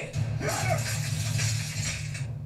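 Anime battle soundtrack: a steady low hum with a crackling hiss sets in about half a second in, over dramatic music, as a lightning-style jutsu builds up.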